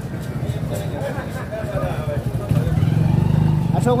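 Street bustle: men talking in the background over a low engine-like rumble, which swells louder about two and a half seconds in.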